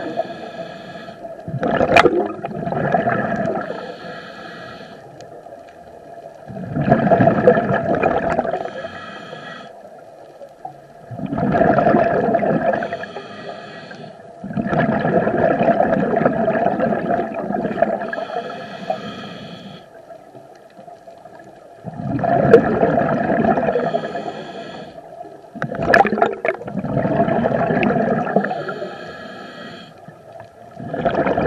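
A scuba diver breathing through a regulator underwater: about six breaths, each a loud gurgle of exhaled bubbles a few seconds long, repeating every four to five seconds with quieter stretches between.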